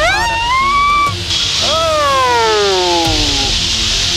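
A woman's voice crying out in two long sliding notes over background music: one rising through the first second, then, after a short break, one falling slowly for about two seconds.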